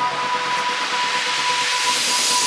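Electronic dance track in a build-up: a swelling white-noise sweep rises in pitch over a held high synth note, with the bass and kick drum dropped out.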